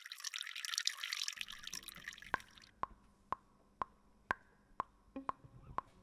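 Liquid pouring into a teacup for about two seconds, then single drops falling into it about twice a second.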